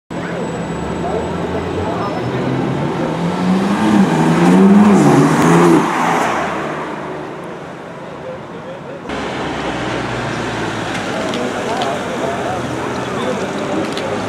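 BMW M4's twin-turbo straight-six accelerating past, its revs rising and dipping, loudest about five seconds in and then fading away. After an abrupt change about nine seconds in, a lower steady engine drone goes on under people's voices.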